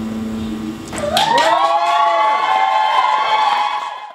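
A held final note dies away about a second in. Then audience members whoop and cheer in high, rising calls that are held until the sound cuts off at the end.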